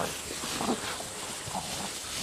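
Two laika dogs fighting in long grass: faint growling and scuffling.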